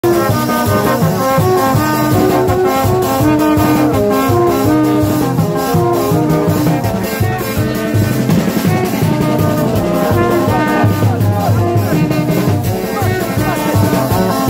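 Street band playing loud music: horns sounding a melody in changing held notes over steady drumming.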